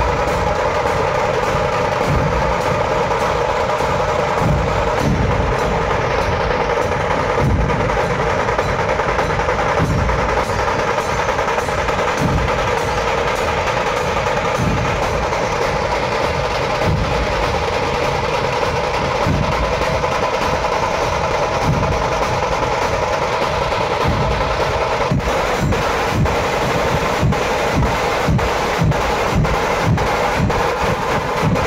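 Dhol-tasha troupe playing loud and without a break: massed dhol barrel drums beating a dense rhythm under fast tasha drum rolls.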